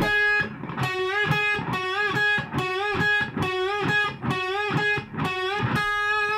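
Les Paul-style electric guitar playing a unison bend over and over: the G string at the 11th fret bent up a whole step to G#, muted with the picking hand, then the same G# played unbent on the B string at the 9th fret. Each cycle is a short upward glide into the note followed by the steady unbent note.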